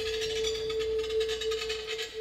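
Ibanez electric guitar holding one sustained note, with a fast, fluttering shimmer above it.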